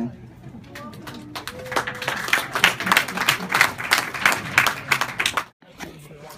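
A small audience clapping for about four seconds after a song, with individual claps audible; it cuts off suddenly.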